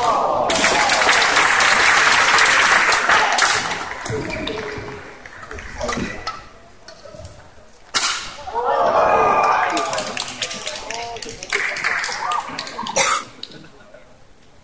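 Spectators in a badminton hall shouting and cheering in two bursts, the first loud one starting just after a sharp strike at the start and another after a strike about eight seconds in. The sharp strikes are racket hits on the shuttlecock; a last one comes near the end.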